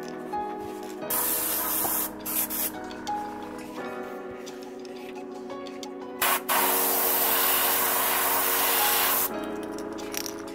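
Airbrush spraying yellow paint onto a crankbait's belly: a hiss of about a second near the start, a few short puffs, then a long spray of about two and a half seconds in the second half, over background music.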